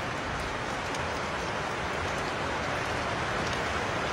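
Steady rain falling, an even hiss of drops with no break.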